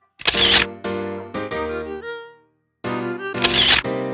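Photo booth playing a chiming tune of ringing, fading notes, broken twice by a loud electronic camera-shutter sound, about half a second in and again near the end, as it takes two pictures.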